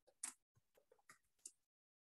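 Near silence broken by a few faint, short clicks, the loudest about a quarter of a second in; the clicks stop after about a second and a half.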